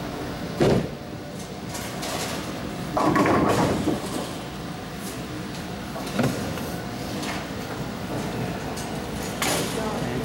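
Ten-pin bowling: the ball lands on the wooden lane with a sharp knock just after release, rolls, and crashes into the pins about three seconds in. Smaller knocks and a second clatter follow later.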